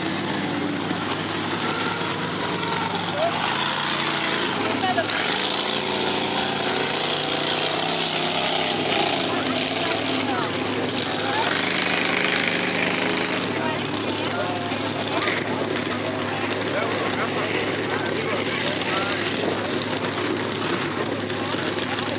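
Big-tyred mud trucks' engines running steadily, with a high hiss swelling between about 3 and 13 seconds in, over background voices.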